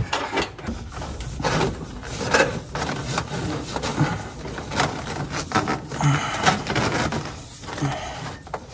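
Corrugated plastic wire loom crinkling and scraping in irregular bursts as it is pulled and pushed by hand through a truck's frame.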